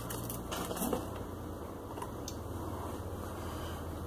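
Low steady hum with a few faint small clicks, about half a second, one second and two seconds in.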